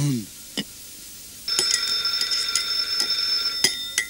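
Telephone bell ringing: one ring of about two seconds, starting about a second and a half in and cutting off suddenly.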